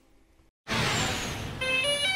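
Channel logo sting: a loud whoosh that starts about half a second in, then a run of electronic tones stepping between pitches near the end.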